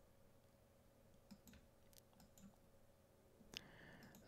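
Near silence with a few faint clicks of a computer mouse, the loudest about three and a half seconds in.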